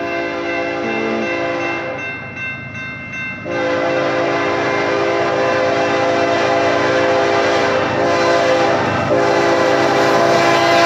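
Multi-note air horn of BNSF ES44C4 locomotive 8221 sounding its grade-crossing warning. One long blast breaks off about two seconds in, and a second long blast starts about a second and a half later and is held, growing louder as the train approaches.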